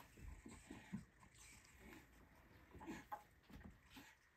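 Near silence: a few faint, short rustles and soft knocks as a board-book page is turned.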